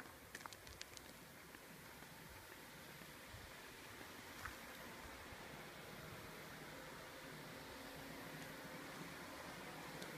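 Near silence: a faint steady hiss of outdoor background noise, with a few light clicks in the first second.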